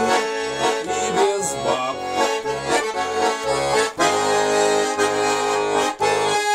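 Russian garmon (button accordion) playing an instrumental passage: a melody on the right-hand buttons over an alternating bass-and-chord accompaniment. About four seconds in it settles on a held chord.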